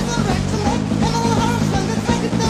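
Studio recording of a rock band playing a song: drums and bass guitar under a melodic lead line that holds and bends its notes.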